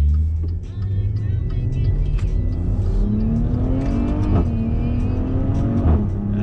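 Maserati Levante 350's twin-turbo V6 accelerating hard under full throttle, heard inside the cabin. The engine note climbs steadily, drops sharply at an upshift about four and a half seconds in, then climbs again.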